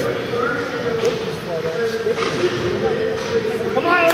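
Spectators' voices calling and chattering in a large indoor ice rink, echoing, with faint knocks from play on the ice.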